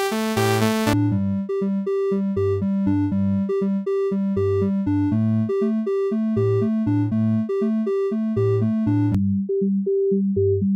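Relica software synthesizer playing a repeating riff of short notes over a bass line. About a second in, the oscillator switches from a bright, buzzy wave to a mellower triangle wave, and just after nine seconds to a pure sine tone.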